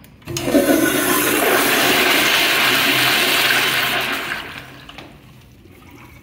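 Commercial toilet flushed by its chrome manual flushometer valve. A loud rush of water through the American Standard bowl starts a moment in, holds steady for about four seconds, then dies away.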